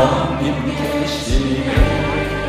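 Live Korean worship music: a male lead singer and a choir sing a praise song over a band, with bass notes and a few drum beats.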